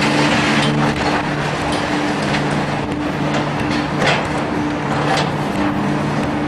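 Heavy diesel machinery running steadily, with short harsh crunching noises every second or so.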